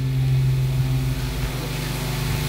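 A steady low droning hum with fainter higher tones held above it, under a light hiss of room noise.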